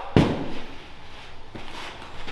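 A medicine ball landing on gym turf after a backward suplex throw: one heavy thud with room echo, then a much softer knock about a second and a half later.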